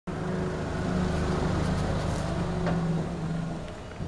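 An engine running nearby with a steady low hum, fading away near the end.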